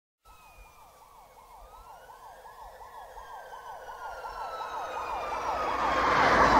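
Siren-like wail fading in steadily, with a fast, even up-and-down sweep about four times a second and a slower tone rising and falling above it: the opening of a recorded metal track.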